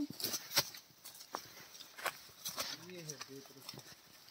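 Footsteps on dry leaf litter and twigs: irregular crackles and snaps as people push through undergrowth. A brief low voice murmurs about three seconds in.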